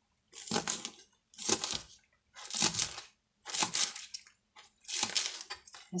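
Kitchen knife slicing through a bunch of spring onions onto a plastic cutting board: five cuts about a second apart.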